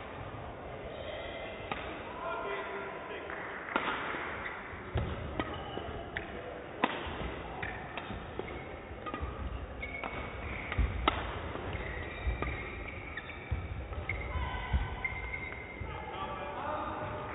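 Badminton rally: sharp cracks of rackets striking the shuttlecock, roughly one to two a second, with players' footsteps thudding on the court floor, heard in a large sports hall.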